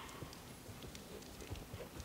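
Faint, soft hoofbeats of a vaulting horse circling on the lunge line, muffled by the arena's wood-chip footing.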